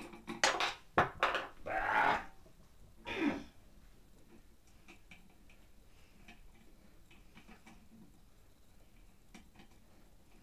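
Small hardware parts being handled by hand: a run of sharp clicks and knocks with two short scraping rubs in the first three and a half seconds, then only faint light ticks.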